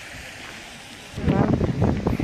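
Wind on the microphone: a faint outdoor hiss at first, then from just over a second in a much louder low rumbling buffeting.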